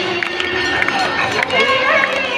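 A large crowd of many voices during the Ganga Aarti, with devotional music and singing under it.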